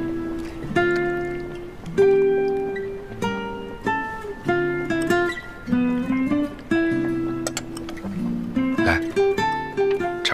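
Background music: an acoustic guitar playing a gentle run of plucked notes and chords, each note fading after it is struck.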